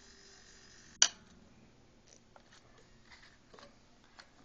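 ElektroPhysik MikroTest automatic magnetic coating thickness gauge giving one sharp click about a second in, as its wheel winds down to the coating thickness and the magnet lets go of the coated surface: the click that marks the reading. A few faint small ticks follow.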